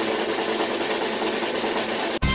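Snare drum roll sound effect playing steadily while a prize wheel spins.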